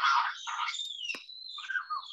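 Forest animal calls, among them a thin high whistle that dips a little in pitch and then holds steady, heard over a video call's audio.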